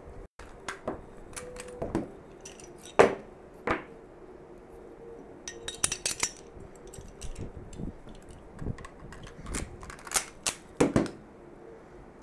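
Rapid, irregular metallic clicks and clacks of a Bersa TPR9 pistol being field-stripped and reassembled by hand at speed. The slide, recoil spring and guide rod are pulled apart, set down on a cloth mat and fitted back together.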